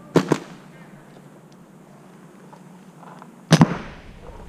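Paintball marker firing two quick pairs of sharp pops, one pair right at the start and another near the end.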